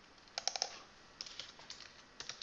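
Computer keyboard typing in two short runs of key clicks, the second starting about a second in.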